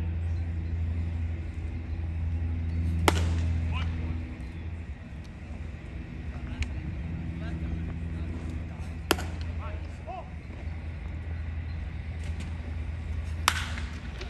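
Three sharp pops of a pitched baseball smacking into the catcher's mitt, several seconds apart, over a steady murmur of background chatter.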